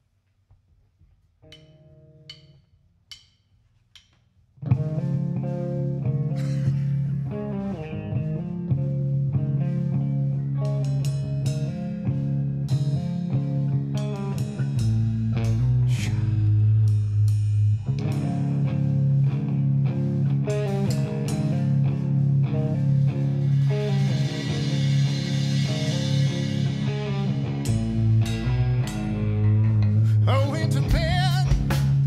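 Rock band playing live. After a quiet start, one short note and four evenly spaced clicks, the electric guitars, bass guitar and drum kit come in together loud about five seconds in, playing an instrumental heavy rock intro.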